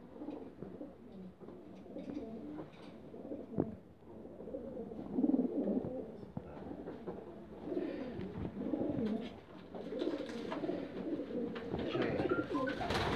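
Racing pigeons cooing on and off in low, soft coos, with one sharp click about three and a half seconds in.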